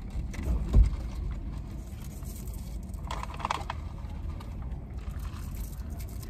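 Plastic drink cups and drink pouches being handled, with a dull thump about a second in and a short plastic rustle about three seconds in, over a steady low rumble of a car cabin.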